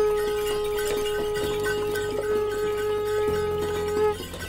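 A conch shell blown in one long, steady note, over background music with light percussion.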